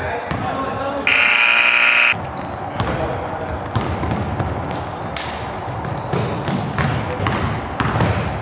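A gym scoreboard buzzer sounds for about a second, starting about a second in. A basketball is then dribbled on a hardwood court, with short high sneaker squeaks and players' voices in the hall.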